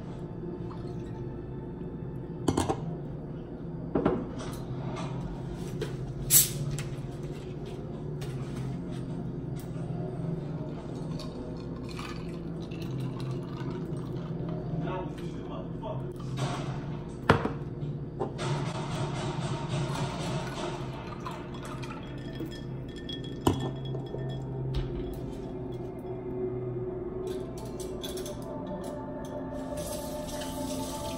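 Drinks being mixed in glassware: several sharp glass clinks and, about two-thirds of the way through, a few seconds of liquid pouring from a bottle into a glass, over steady background music.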